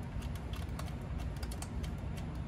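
Steritest Symbio peristaltic pump running, pumping media through the test canisters: a steady low hum with a quick run of light clicks, several a second.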